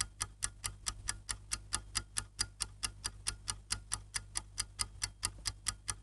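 Ticking clock sound effect: an even run of sharp ticks, about four to five a second, timing the pause for the viewer's answer. It stops at the end.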